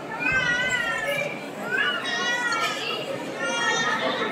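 High-pitched children's voices calling out several times, each call bending up and down in pitch, over a background babble of voices.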